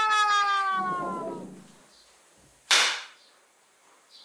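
A comedic sound effect: one sustained tone slides slowly downward and fades out over the first second and a half. About 2.7 seconds in comes a single short, sharp crack.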